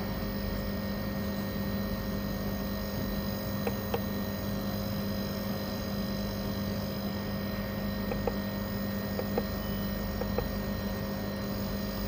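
Steady electrical hum from running equipment: a low drone with a few fainter steady higher tones over a soft whirring noise, and a few faint ticks.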